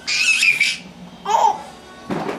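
Baby laughing: a high-pitched squeal of laughter in the first half second or so, then a shorter, lower laugh about a second and a half in.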